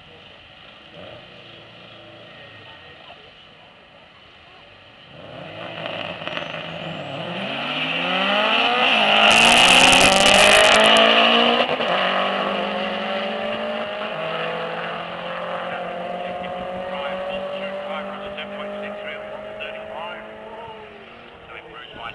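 Two Subaru Impreza STIs launching off a drag-strip start line about five seconds in. Their turbocharged flat-four engines rev up in repeated rising sweeps through the gears. The sound is loudest a few seconds after the launch, then fades slowly as the cars run away down the strip.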